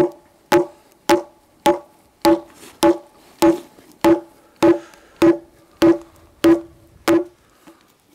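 A hatchet pounding an ash log, about thirteen even knocks with a short hollow ring to each, roughly one and a half a second, stopping near the end. The pounding loosens the log's growth rings so they can be split into basket splints.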